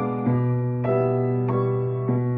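Acoustic piano playing a waltz: a low bass note held with the sustain pedal under chords struck about every 0.6 seconds.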